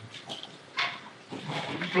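A pause in a man's speech filled with non-word vocal sounds: a short sharp breath or sniff about a second in, then a low murmur building into speech near the end.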